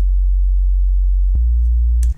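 Pure sine-wave sub bass from Xfer Serum's sub oscillator playing two long, very low notes. It is a clean tone with no edge, and it steps up to a slightly higher note about two-thirds of the way through.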